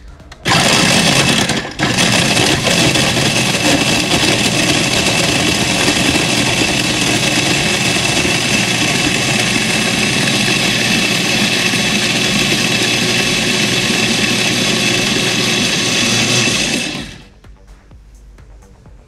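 Osterizer Classic blender starting about half a second in and crushing ice into a frozen mint cocktail. It cuts out for a moment just under two seconds in, then runs steadily and loudly until it winds down near the end.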